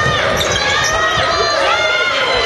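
The sound of a basketball game in a gym: several voices shouting and calling at once over the court, with the ball bouncing and thuds of players' feet on the hardwood floor.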